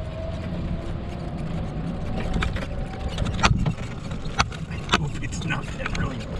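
Steady low rumble of a car's engine and road noise heard from inside the cabin as the car moves off. Three sharp clicks come in the second half.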